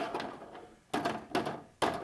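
Plastic wrestling action figures being knocked and slammed about in a toy wrestling ring: about four sharp knocks, one at the start and three more in the second half.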